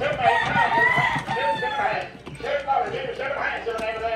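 Roosters crowing and chickens clucking among caged poultry, with the calls overlapping. There is a brief lull about halfway through, and then the calling picks up again.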